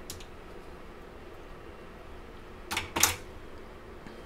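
Small jewelry pliers and tools handled on a craft table: a faint click at the start, then two sharp clicks about a third of a second apart near the end.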